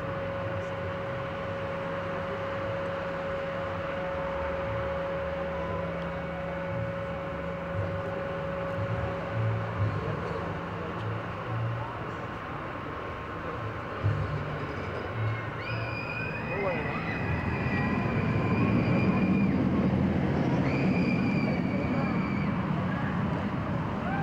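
Inverted steel roller coaster: the train climbs the lift hill with a steady mechanical hum and low rhythmic clatter, then runs down the track with a growing noise of wheels on steel while riders let out long high-pitched screams, several in a row, starting about two-thirds of the way in.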